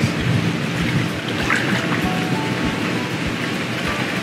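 Background music with a steady low beat, under a steady rushing hiss.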